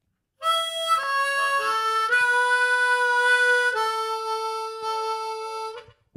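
Harmonica playing a short melodic phrase, heard through a TC-Helicon Play Electric vocal processor: a few notes stepping down over the first couple of seconds, then a long held note that stops just before the singing resumes.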